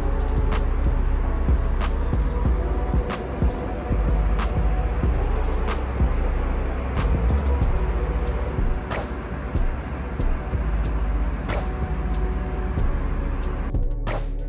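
Airbus A319 cabin noise, a steady low rumble, with background music carrying a regular beat laid over it.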